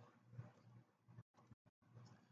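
Near silence: faint low room hum with a few very faint ticks.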